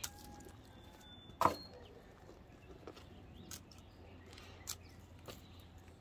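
Hand pruners snipping through SunPatiens stems: one sharp snip about a second and a half in, then a few fainter clicks.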